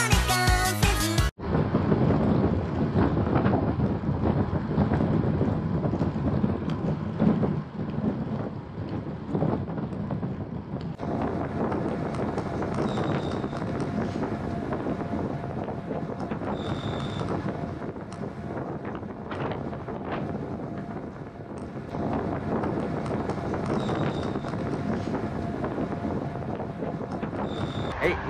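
A short stretch of background music that stops suddenly about a second in, then steady wind rushing over the microphone of a camera riding along on a road bike.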